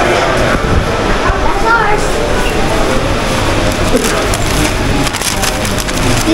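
Steady hubbub of indistinct voices in a busy fast-food restaurant, with a paper takeaway bag crinkling near the end.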